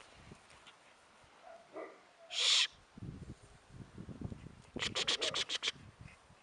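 A Chow Chow dog moving about on dry grass: a short loud puff of breath-like noise about halfway, low scuffs, then a quick run of about eight sharp rasps near the end.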